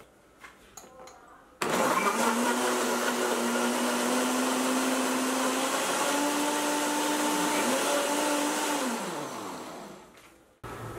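Countertop blender switched on about a second and a half in, blending almond milk, banana and oats into a smoothie. The motor runs with a steady whine that steps up in pitch partway through, then winds down with a falling pitch near the end.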